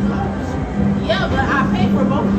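Busy amusement-arcade ambience: music playing with voices talking over it, loudest about a second in.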